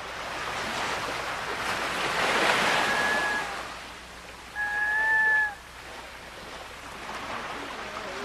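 Sea surf washing, swelling and easing off, with two high drawn-out gull cries: a faint one about three seconds in and a louder, held one about five seconds in.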